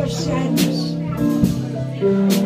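Small live band playing a slow country ballad: held keyboard chords, with a light cymbal stroke about once a second.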